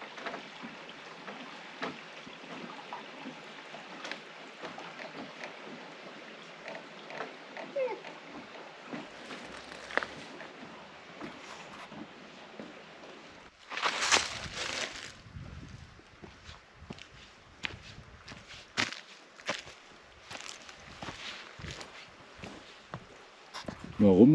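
A shallow mountain creek trickling over rocks, with scattered footsteps and small knocks as a hiker crosses a wooden footbridge. About 14 seconds in there is a brief, louder rushing noise.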